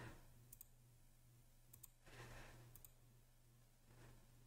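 Near silence with a faint steady low hum, broken by three faint computer mouse clicks, each a quick double tick, spaced about a second apart.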